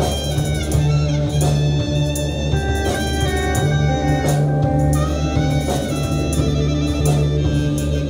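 Live psychedelic drone rock from a full band: electric guitars, bass, drums, synthesizer and clarinet playing together. A heavy sustained low drone runs underneath, with held guitar and reed tones above it and regular drum strikes.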